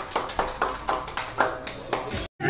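Scattered handclaps from a few people, a string of sharp, irregular claps.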